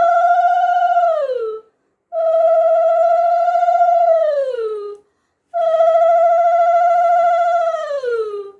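Conch shell (shankha) blown in three long blasts, each a steady note that sags in pitch at the end as the breath runs out.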